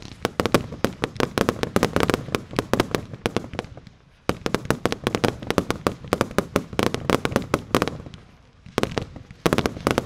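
Consumer fireworks display firing in quick succession: a dense string of sharp launch thumps and bursting reports, several a second. It pauses briefly about four seconds in, starts again suddenly, thins out near the end and then picks up again.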